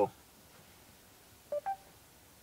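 Two short electronic beeps from the Mercedes-Benz MBUX voice assistant, the second higher in pitch than the first, about a second and a half in: the system's tone acknowledging a spoken command. Around them is near-quiet cabin room tone.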